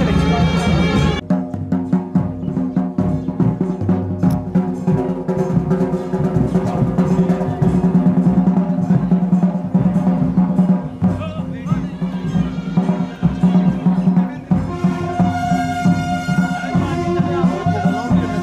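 Drums beating under steady, held wind-instrument tones, typical of a traditional Himachali procession band accompanying a devta. The music changes abruptly about a second in.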